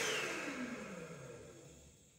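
Excel Dryer ThinAir hand dryer spinning down after shutting off: its motor whine falls steadily in pitch and fades to nothing.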